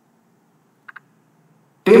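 Near silence between a man's sentences, broken by two brief faint ticks about a second in; his voice comes back near the end.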